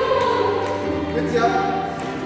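Mixed choir singing held, gliding chords in several parts, accompanied by an electronic keyboard.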